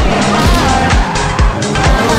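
Ford Fiesta rally car engine running hard with its tyres skidding in a drift, mixed under loud music with a steady drum beat about twice a second.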